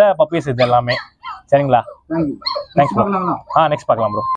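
Small puppies giving a few short barks and whimpers over a man's talking.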